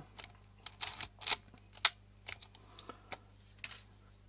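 Olympus 35 RD rangefinder camera worked by hand: the film advance lever and leaf-shutter release clicking, a string of small sharp mechanical clicks at irregular intervals, the loudest a little under two seconds in.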